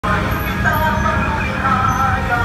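Urban street ambience: a steady rumble of road traffic with voices talking in the background.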